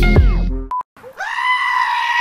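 Upbeat outro music cuts off, and after a short beep a sheep gives one long, loud, steady bleat, held like a human scream, starting about a second in.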